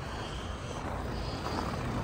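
Steady outdoor background noise: a low rumble with an even hiss over it, and no distinct event.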